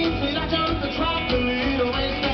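Live rockabilly band playing at full volume, guitars to the fore, amplified through a Nexo line-array PA in a large hall.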